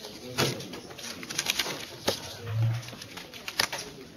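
Sheets of paper and a plastic overhead-projector transparency rustling and clicking as they are handled and slid off the projector glass. A brief low, steady sound comes about two and a half seconds in.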